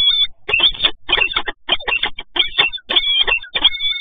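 Peregrine falcon calling repeatedly: a rapid run of short calls, with a few longer, wavering high notes near the end.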